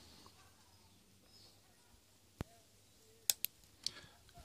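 Nail clipper snipping off the excess wire legs of a soldered through-hole resistor on a circuit board: a few sharp clicks, the first about midway, then a quick pair about a second later and one more near the end.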